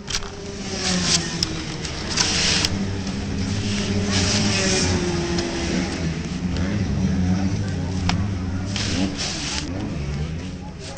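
Two-stroke kart engines running at idle on the starting grid, a steady low drone that fades in at the start, picked up by a camera mounted on the kart's radiator. Short bursts of hiss come and go over it.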